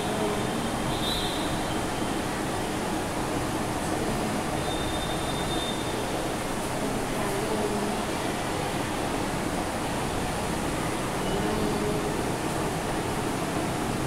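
A steady background hum and hiss, with faint short high squeaks from a marker writing on a whiteboard, about a second in and again around five seconds in.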